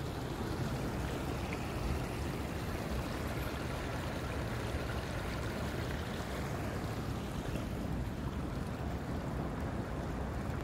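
Small creek flowing steadily, a continuous rush of water.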